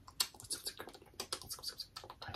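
Quiet, irregular mouth clicks and lip smacks made close to the mouth: mock ASMR sounds.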